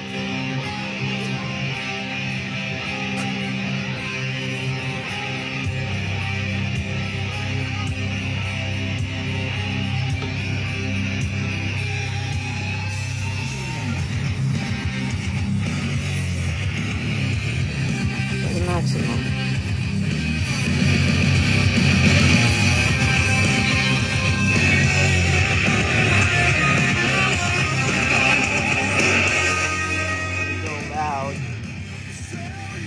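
A rock song with distorted electric guitar playing through a small Marshall Emberton portable Bluetooth speaker. The music grows fuller and louder about halfway through.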